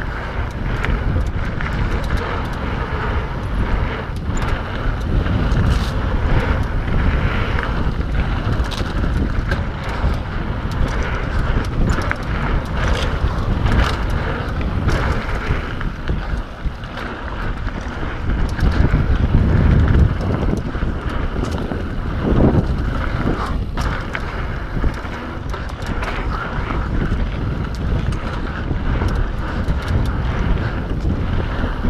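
Wind rushing over the camera microphone while a mountain bike rides fast down a dirt singletrack, with the tyres running over the dirt and many short rattles and knocks from the bike over rough ground.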